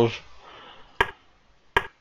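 Two sharp single clicks about three-quarters of a second apart, made as moves are entered on a computer chess board.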